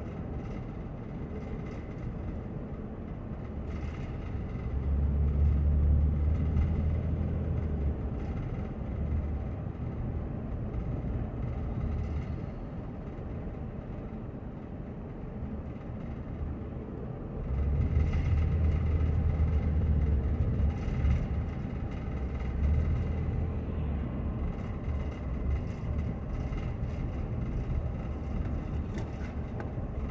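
Car road and engine noise heard from inside the moving car: a steady low rumble that swells louder twice, about five seconds in and again from about eighteen seconds.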